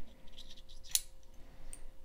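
Light clicking and ticking of beads and a copper Indiana blade shifting on a steel wire spinner shaft as they are worked up the wire by hand, with one sharper click about a second in.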